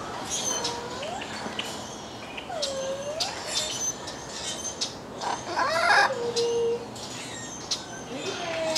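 Macaws calling in an aviary: several drawn-out, swooping calls, the loudest a harsher call about five and a half seconds in that ends in a held note, with short high chirps throughout.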